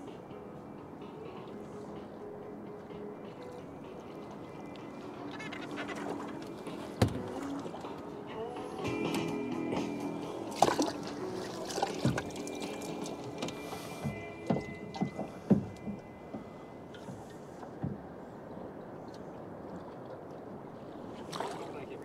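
Background music with steady held notes, with a series of sharp knocks through the middle as the lid of a boat's live bait tank is lifted and handled.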